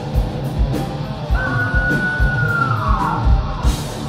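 Thrash metal band playing live: distorted electric guitars, bass and drums with a steady drum beat and cymbals. In the middle, a long high held note that slides down in pitch near the end.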